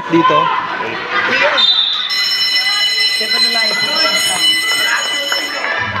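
Game-clock buzzer sounding one steady electronic tone for about three and a half seconds, starting about two seconds in, marking the end of the quarter. Crowd voices carry on underneath.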